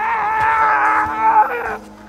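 A man's long, high-pitched cry, held at a steady pitch for about a second and a half before breaking off. A low, steady musical note carries on quietly underneath.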